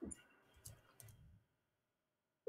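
Near silence with a few faint clicks from the computer he is solving on: one at the very start, one about half a second later and one about a second in.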